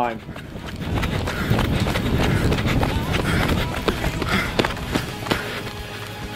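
Footsteps of people running on a rubberised running track, many irregular steps under a steady rumbling noise.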